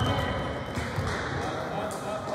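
Wrestlers hitting a foam wrestling mat during a takedown, a few low thuds in the first second, with spectators shouting in a gym.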